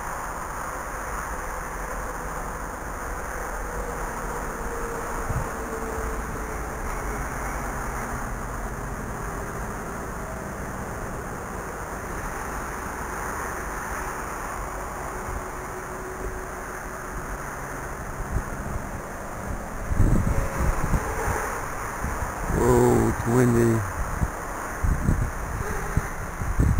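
Wind rushing over the microphone, with the faint whine of a small quadcopter's motors drifting in pitch. The wind gusts harder on the microphone from about twenty seconds in.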